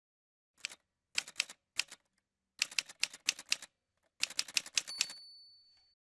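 Typewriter sound effect: several short runs of rapid key strikes, ending with a single high bell ding that rings on for about a second near the end.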